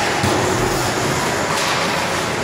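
Steady ice-rink noise during a hockey game in play, with faint voices in it.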